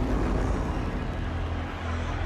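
A low, steady rumbling drone over the broad noise of a large arena crowd.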